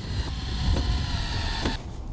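Cordless DeWalt drill driving a screw through a hinge into the wooden lid: a steady motor whine under load that cuts off about three-quarters of the way through.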